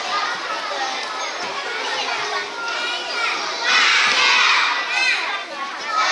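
Many young children's voices chattering and calling out at once, growing louder about four seconds in.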